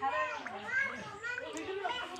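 Background voices talking, high-pitched like children's.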